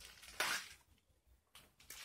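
Rustling of a metallic plastic bubble mailer being handled: a short crinkle about half a second in, then a fainter one near the end.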